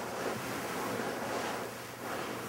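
Bedcovers and pillow rustling as a person turns over and settles in bed, a soft swishing noise that swells and eases in waves.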